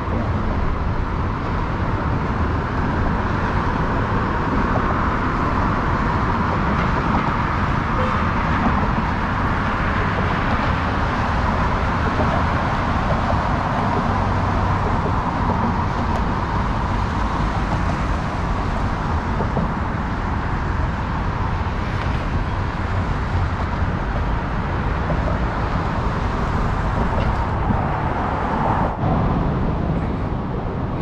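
Steady traffic noise from cars on an elevated highway, a constant wash of road sound without distinct events.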